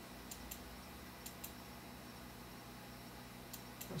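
Faint computer mouse clicks in three quick pairs as the eraser tool is clicked on leftover white spots in the image, over a low steady hum.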